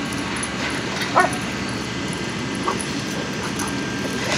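Dogs at rough play: one short, sharp bark about a second in and a fainter one later, over a steady background hiss.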